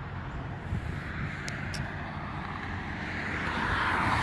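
A car approaching on the road, its tyre hiss growing louder toward the end over a low traffic rumble.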